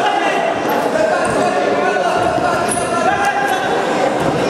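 Voices of coaches and spectators calling out, echoing in a large sports hall, over dull thuds of wrestlers' bodies on the mat.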